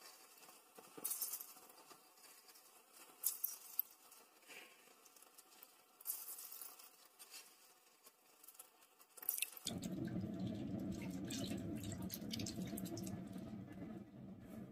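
Light splashing and dripping of milk in a large aluminium pot as a hand works in it, with scattered short crackles. About two-thirds of the way in, a steady low noise starts suddenly and becomes the loudest sound.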